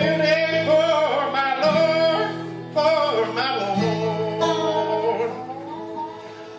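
A bluegrass gospel jam band plays and sings a gospel song: acoustic guitars, upright bass and fiddle under a group of voices holding long sung notes.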